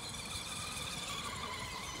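FTX Outlaw RC monster truck's electric motor and drivetrain whining steadily as the truck drives across grass, a thin high-pitched whine.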